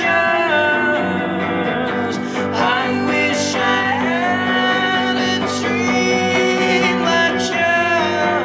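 A live band performing a song: guitar with singing over it, playing steadily throughout.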